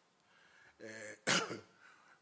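A man clears his throat, then gives one sharp cough into his hand about a second and a half in.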